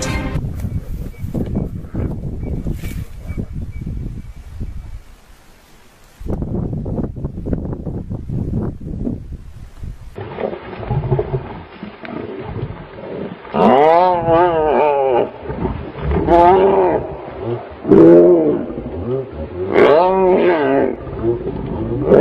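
A lion and hyenas growling and calling in a fight. Low, rumbling growls come first, then about halfway through a run of loud, drawn-out calls that rise and fall in pitch.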